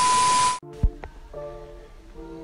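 Video-editing glitch transition: a loud burst of TV-static hiss with a steady high beep for about half a second, cutting off suddenly. Quiet background music follows, with a single low thump about a second in.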